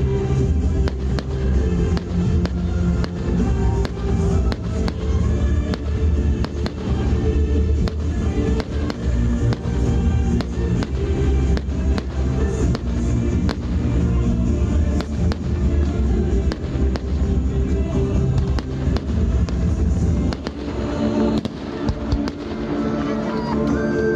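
Fireworks display: a steady run of shell bursts and crackles heard over loud music.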